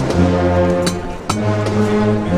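Brass band playing a slow processional march: low brass holds chords that change about two-thirds of the way through, with a couple of sharp percussive strikes.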